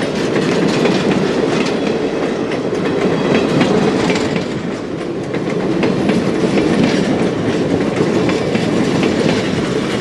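Passenger coaches of a train rolling past close by: a steady rail rumble with repeated clicking of the wheels over the rail joints.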